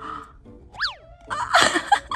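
A cartoon boing sound effect, a quick glide up and back down in pitch just under a second in, followed by a loud shriek from a woman, over background music.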